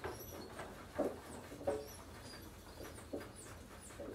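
Naked mole-rats calling in their colony: short chirps, about five scattered through the four seconds, with faint higher falling chirps between them.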